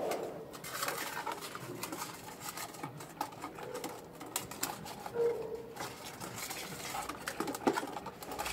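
A dog eating from a stainless steel bowl: a run of wet chewing and licking clicks, with a few sharper clicks near the end. A short low hum comes a little after five seconds in.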